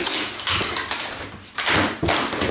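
A taped cardboard parcel being pulled open by hand: rough, noisy bursts of cardboard scraping and packing tape tearing, several times over.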